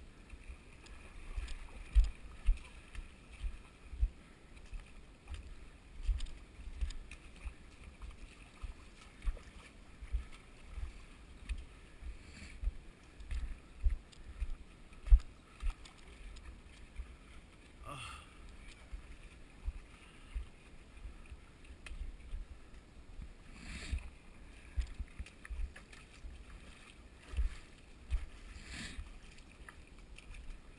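Footsteps wading and sloshing through a shallow muddy creek, with a dull thump at each stride, about one or two a second, irregular.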